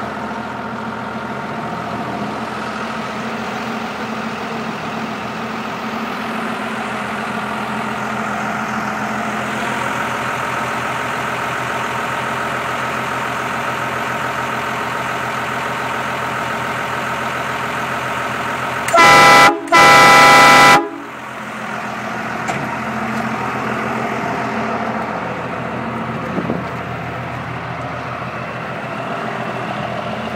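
A 12-valve Cummins inline-six diesel idling steadily in a 1978 Chevy K60. About 19 seconds in, the truck's under-bed three-trumpet train horn sounds two very loud blasts, a short one and then one of about a second.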